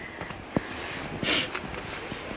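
Faint knocks of feet and hands on the driftwood planks and posts of a climbing walkway, with one short breathy rush, like a sniff or exhale, just over a second in.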